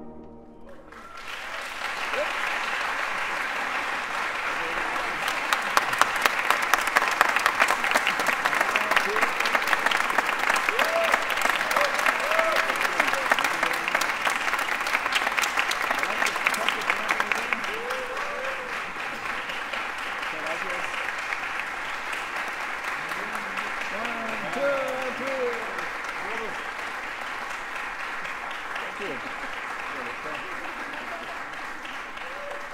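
Audience applauding at the end of a concert piece. The clapping starts about a second in, is thickest through the middle and eases off somewhat in the second half, with a few voices calling out over it.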